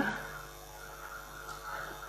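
Quiet room tone with a steady low electrical hum, and faint voices murmuring in the background; the tail of a spoken "yeah" cuts off at the very start.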